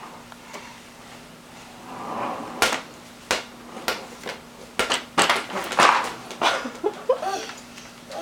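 Children playing with a ball on a parquet floor: a string of about half a dozen sharp knocks and slaps over a few seconds, then a short vocal sound from a small child near the end.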